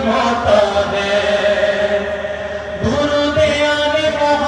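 A man reciting a naat in a long, melismatic chanting voice, amplified through a handheld microphone. He holds long notes and takes a new, higher held note about three seconds in.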